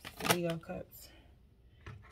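Tarot cards being shuffled by hand: a few quick card flicks and slaps, mostly in the first second, with a brief bit of voice from the reader over them, then a quieter stretch with one last click near the end.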